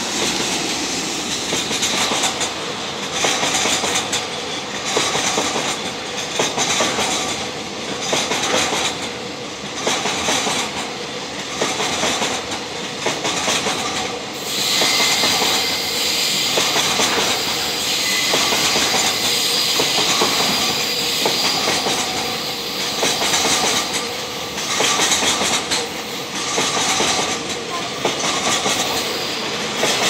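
Freight train of Chiki flatcars loaded with long rails rolling past, its wheels clattering over the rail joints in a regular rhythm about once a second. A high steady wheel squeal joins about halfway through.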